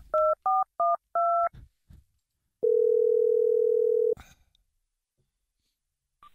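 Telephone dialing: four quick touch-tone keypad beeps, then a single ringing tone about a second and a half long as the line rings.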